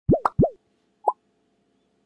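Cartoon-style 'bloop' sound effects from an animated intro: two quick rising pops with a click between them, then a single short blip about a second in.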